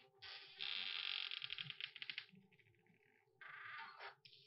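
A door being unlocked and opened: a long rattle of the key, lock and handle that breaks into rapid clicks, then a shorter noisy burst near the end as the door opens.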